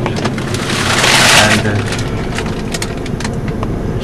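Car running, heard from inside the cabin: a steady low engine hum, with a loud burst of hissing noise for about a second near the start, and a few faint clicks.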